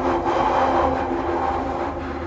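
London Underground train running, heard from inside the carriage: a steady low rumble with a steady whine of several held tones over it.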